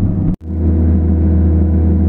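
Feller buncher's diesel engine running steadily, heard from inside the cab as a low drone. The sound drops out for an instant about a third of a second in at an edit, then the steady drone carries on.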